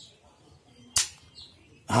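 One sharp knock from a scooter clutch assembly worked by hand, about a second in. It is the knock a rubber damper without a metal insert lets through, the cause of a noisy torque drive.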